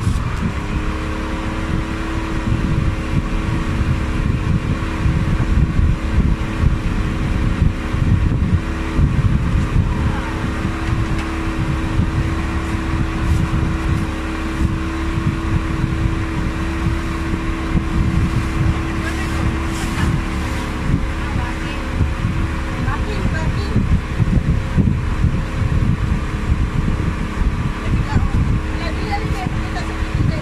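Outboard motor of a small open fibreglass fishing boat running at a steady cruising speed, with a steady engine hum and wind buffeting the microphone.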